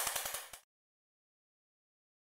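Digital silence, after a brief tail of rapidly pulsing sound that cuts off abruptly about half a second in.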